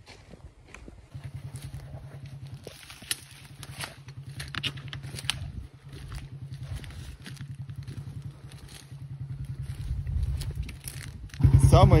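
A Chinese moped's engine running at a distance as it labours through a deep puddle, with twigs and leaf litter crackling underfoot. About eleven and a half seconds in, the engine suddenly becomes loud and close.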